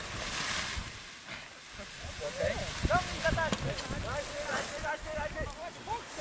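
Wind rushing over the microphone as a tandem paraglider is winch-launched, followed from about two seconds in by a string of short, high-pitched vocal whoops without words.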